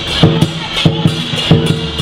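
Lion dance percussion: a large drum beaten in a quick, uneven rhythm, with cymbals clashing over it.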